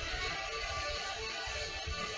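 Rock song playing at a low level, electric guitar strumming over drums.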